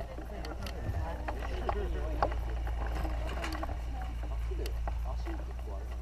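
Wind buffeting a camera microphone as a steady low rumble, with indistinct voices of people close by and a few small clicks.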